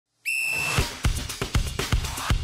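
Broadcast intro sting music: a whistle blast lasting about half a second near the start, then heavy percussive hits in a quick beat.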